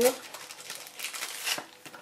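Thin clear plastic zip bag crinkling as hands open it and slide out a set of tweezers; the rustling dies away near the end.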